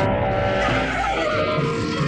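A sudden loud rushing noise with a low rumble under it that fades after about a second, mixed with music.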